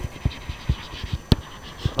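Stylus writing on a tablet screen: a string of sharp, irregular taps with faint scratching between them as words are handwritten.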